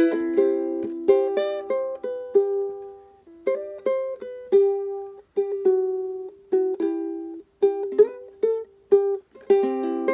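Ukulele played by hand with no singing: strummed chords at the start and again near the end, with sparser plucked notes and short chords in between, each ringing out and fading, with brief pauses between phrases.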